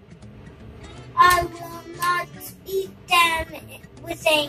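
A child's voice singing in short phrases from about a second in, over steady background music.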